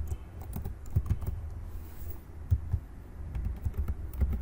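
Typing on a computer keyboard: irregular key strokes, a few a second, with uneven pauses between them.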